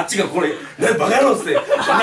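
Men laughing together, chuckling, with bits of talk mixed in.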